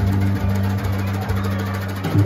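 Live jazz combo playing between sung lines: wire brushes swept on the snare drum under long, held low notes.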